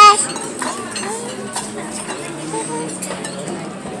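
Restaurant background voices with a few light clinks of a knife and fork on a plate as pasta is being cut.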